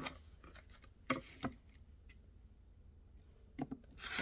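Acrylic quilting ruler and paper-backed fabric pieces being handled and repositioned on a cutting mat: a few short rustles and knocks, the loudest pair just after a second in, with small clicks near the end.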